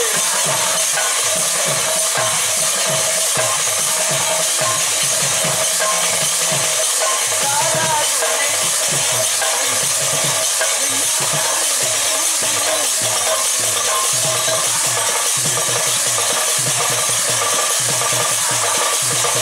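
Kirtan accompaniment: hand cymbals (jhanj) clashing continuously to make a steady, hissing metallic shimmer, with strokes of a double-headed barrel drum beneath it.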